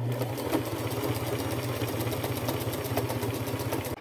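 Electric domestic sewing machine running at a steady speed, stitching a zigzag seam through layered fabric: a low motor hum under a rapid, even clatter of the needle.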